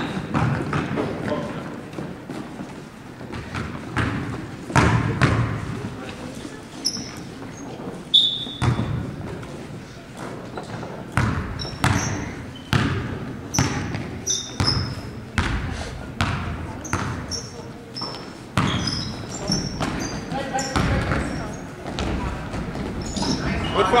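A basketball bouncing on a hardwood gym floor, with irregular sharp bounces and short high squeaks of sneakers as players run, echoing in a large gym.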